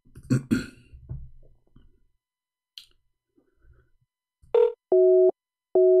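Faint clicks and crackle on a phone line, then, about four and a half seconds in, a short electronic beep followed by a steady tone sounding in pulses of about half a second, like a telephone busy signal.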